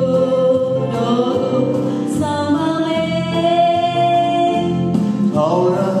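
A woman and then a man singing a Christian song in turn into microphones, in long held notes over musical accompaniment; a new sung phrase begins about five seconds in.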